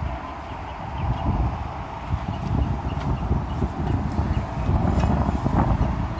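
Wind buffeting a phone microphone as a low, gusty rumble, with a few faint clicks of handling noise.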